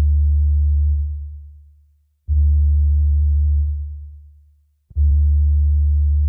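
Deep synth bass notes playing alone, with the rest of the beat gone. Each note holds for about a second and then fades away, and a new one comes in roughly every two and a half seconds.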